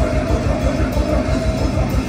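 Punk rock band playing live at full volume: distorted electric guitars and bass over drums, with a steady beat.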